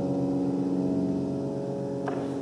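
Concert grand piano sustaining soft chords that slowly fade away.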